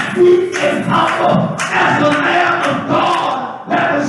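Many voices of a church congregation raised together, shouting and singing in loud worship, in short phrases.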